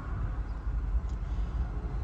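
Steady low rumble of a BMW 320i's 2.0-litre four-cylinder petrol engine idling, heard from the cabin with the door open.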